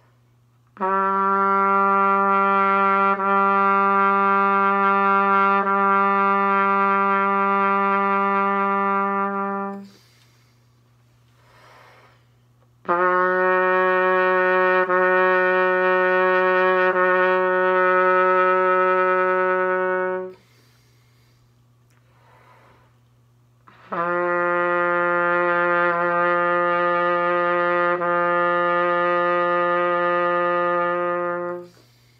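Bb trumpet playing long-tone warm-up notes in the low register: three long, steady held notes, each a little lower than the last, with short quiet gaps between them.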